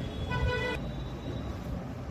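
A single short horn toot, steady in pitch, lasting about half a second, over a low background hum.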